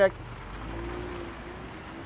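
A 2018 Ford Mustang convertible driving off slowly: a low engine rumble that eases after about a second and a half, with a faint steady hum under an even hiss.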